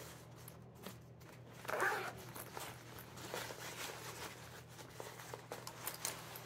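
Faint handling sounds of a nylon fly-fishing vest: small clicks and fabric rustles as a zipper pull and clipped-on gear are worked, with a louder rustle about two seconds in. A steady low hum runs underneath.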